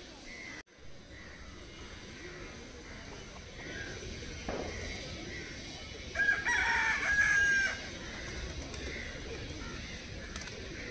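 Rooster crowing once, about six seconds in, a single call lasting about a second and a half over faint yard sounds.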